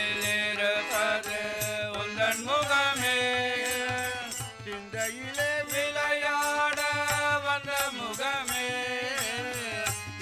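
Live devotional bhajan: men's voices singing a chant-like melody with long held notes, accompanied by tabla, harmonium and hand-held clappers keeping a steady beat.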